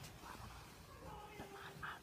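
Quiet, muffled handling noise from a phone microphone held against clothing, with faint voices in the background.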